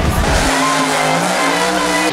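Monster truck engine running loud under the backing music, with the music's deep bass dropping out about half a second in.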